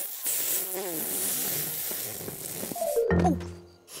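A cartoon lion's attempt at a whistle that comes out as a long, airy whoosh of blown breath with no whistle tone in it, over background music. The whoosh stops about three seconds in, and a short falling tone follows.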